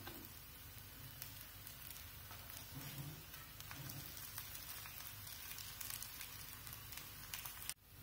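Faint sizzling of oil on a flat iron tawa under small potato, rice-flour and poha patties as they shallow-fry, with scattered light taps as the patties are turned over by hand. The sound cuts off suddenly just before the end.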